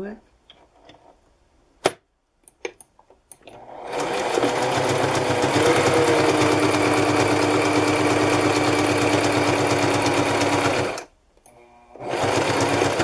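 Domestic electric sewing machine stitching through layered fabric: after a couple of sharp clicks, the motor speeds up and runs steadily with a fast needle rattle for about seven seconds, then stops abruptly.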